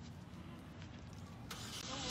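Faint steady low hum of a motor vehicle engine or nearby traffic. A high voice starts about a second and a half in.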